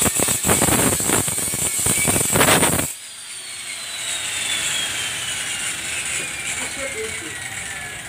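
Electric angle grinder grinding the steel body panel of a bus: a loud, high grinding with rough, uneven scraping that cuts off suddenly about three seconds in. Its whine then falls steadily in pitch over the following seconds as the disc spins down.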